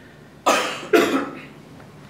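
A person coughing twice in quick succession, the second cough about half a second after the first.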